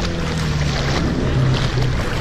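Jet ski engine running steadily, its hum wavering slightly in pitch, over water sloshing and splashing close to the microphone.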